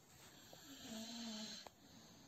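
A faint, breathy vocal hum or drawn-out 'uh' from a woman's voice, falling slightly in pitch over about a second, followed by a small click.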